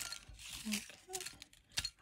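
Folded paper slips rustling as a hand stirs them around in a china dish, with light clicks of paper against the dish and one sharper click near the end.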